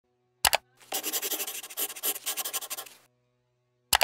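A sharp double click, then about two seconds of rapid scratchy rattling, then another sharp double click near the end.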